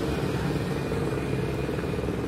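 A truck's diesel engine idling steadily, a low even drone with no change in pitch.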